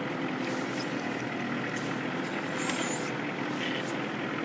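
Kubota L4400 tractor's four-cylinder diesel engine running steadily under load as it drags a heavy jack pine log held in the backhoe.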